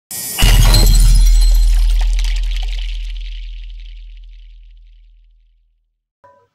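Intro sound effect: a sudden bright shattering crash over a deep bass boom, both fading away over about five seconds.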